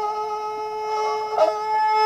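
Nepali sarangi, a bowed wooden folk fiddle, holding one long steady note, with a brief break in the tone about one and a half seconds in.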